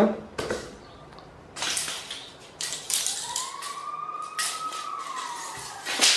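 Steel tape measure being pulled out of its case in several strokes, each pull a rasping slide of the blade. In the middle a thin ringing tone rises and then slowly falls.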